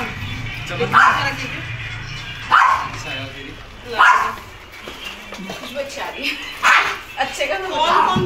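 A dog barking four times, single short barks spaced a second or more apart.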